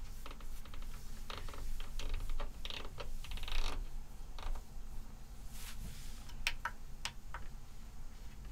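Clicks and ticks from the buttons and rotary encoders of a QCon Pro X control surface being worked by hand. Runs of rapid ticks come in the first half, then a few separate sharp clicks near the end.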